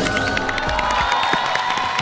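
Game-show music cue with held tones over studio audience cheering and applause, marking a correct answer.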